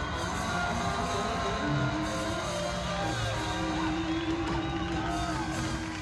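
Live blues band playing with electric guitar, a long note held from about two seconds in.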